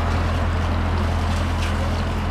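Steady rushing noise over a constant low hum, with no distinct events.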